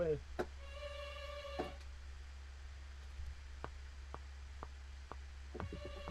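A held note from a sampled string patch for about a second, then a DAW metronome count-in: four sharp clicks half a second apart, matching the session's 120 BPM tempo. Near the end, the sampled strings begin playing as recording starts.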